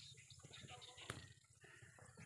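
Near silence: faint outdoor ambience with a soft click about a second in.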